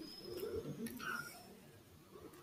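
Faint, low cooing of a bird, like a pigeon's, during the first second or so.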